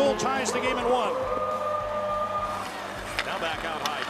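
Hockey arena ambience: crowd voices over PA music, with a held note partway through. A couple of sharp stick-on-puck clacks come near the end.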